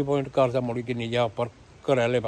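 Only speech: a man talking, with a short pause about a second and a half in.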